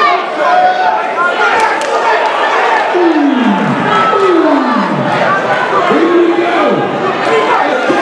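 Boxing crowd in a large hall, shouting and chattering over one another, with several long shouts that fall in pitch, about three, four and a half and six seconds in.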